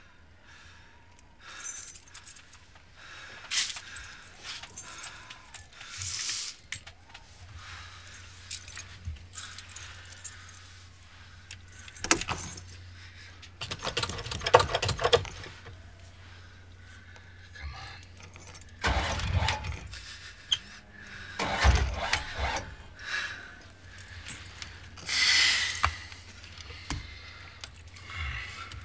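Keys jangling, then a Fleetwood RV's engine being cranked with the key after its battery was revived; it turns over in several attempts and a low steady running hum comes in, with clunks and clicks from inside the cab.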